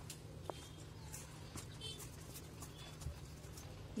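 Quiet mixing: a silicone spatula stirring minced mutton filling in a steel bowl, with a few faint taps, over a steady low hum.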